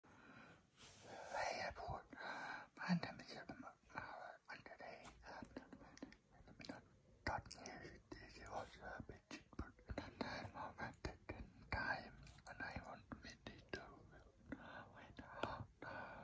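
Faint whispering voice, broken into short phrases, with many soft clicks and taps among it.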